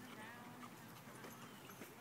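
Faint, distant voices of people chatting over a steady low outdoor background.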